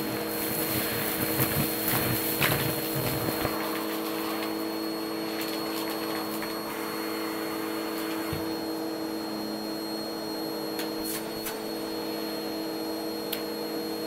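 Vacuum cleaner motor running steadily through a hose, with gritty debris crackling as it is sucked up the nozzle for the first few seconds. After that only the motor's steady hum goes on, with a few sharp clicks.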